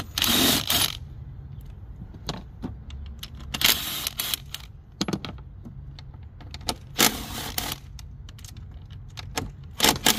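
Ryobi cordless power driver spinning a socket on an extension to run out bolts on the engine, in three short bursts under a second each about three seconds apart. Small metallic clicks of the socket and bolts come between the bursts.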